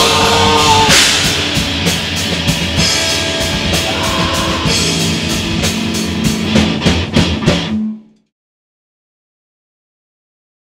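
A metal band (drum kit, electric guitar and bass) playing live, recorded on a couple of room mics, with a run of hard accented hits near the end before the recording cuts off suddenly about eight seconds in.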